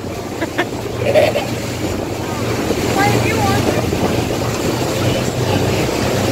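Water taxi under way: its engine running with a steady low hum under wind buffeting the microphone and water rushing past the hull.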